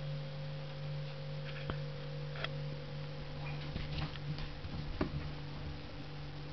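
Fermentation airlock bubbling vigorously: irregular blips and clicks as carbon dioxide pushes through the airlock water, coming quickly in a cluster about halfway through. This is very active fermentation less than an hour after pitching wort onto a previous batch's yeast cake. A steady low hum runs underneath.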